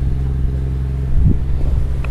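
A fishing boat's engine running at a steady pace with a low, even hum. There is a brief knock a little over a second in.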